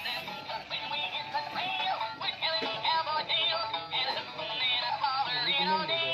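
A plush rocking horse toy's built-in sound unit playing an electronic children's tune with a synthesized singing voice, thin-sounding with almost no bass.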